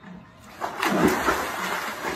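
A person entering a swimming pool from its edge: a splash about half a second in, followed by water washing and sloshing that slowly dies down.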